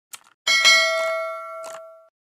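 Notification-bell 'ding' sound effect of a subscribe-button animation: a single bell strike about half a second in, ringing and fading over about a second and a half. Short mouse-click sound effects come just before and near the end.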